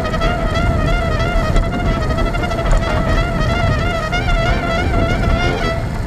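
A single instrumental melody of long held notes with strong vibrato, over a low rumble of wind on the microphone.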